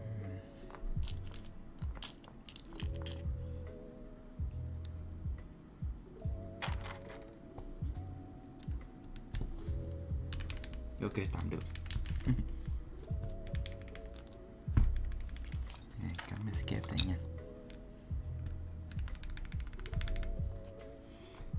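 Plastic keycaps being pressed onto the switches of a Daisy 40 mechanical keyboard and the keys pressed down: irregular sharp clacks and clicks, in small clusters.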